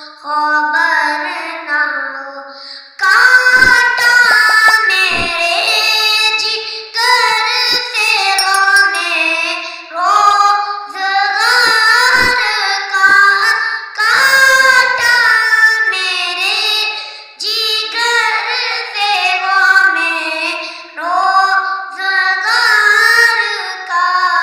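A boy singing solo and unaccompanied into a handheld microphone, in long, drawn-out melodic phrases with short pauses for breath between them.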